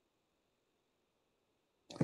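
Near silence, with a voice beginning right at the very end.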